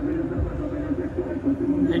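Indistinct voices in the background over a low, steady rumble.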